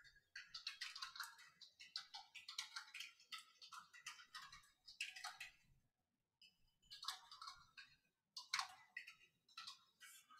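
Faint computer-keyboard typing, a quick irregular run of key clicks with short pauses about six and eight seconds in.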